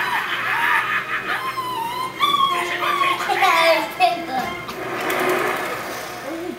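A young child's high-pitched wordless squeals and playful vocal noises, in gliding, drawn-out calls.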